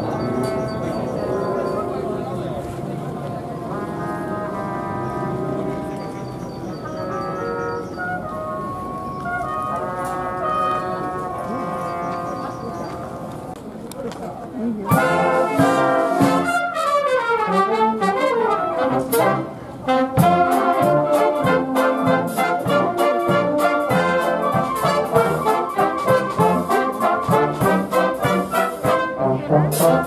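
Military wind band of brass and woodwinds (flutes, clarinet, saxophone, tuba-family horns) playing. It is softer for about the first half, then about fifteen seconds in the full band comes in louder with a steady, marked beat.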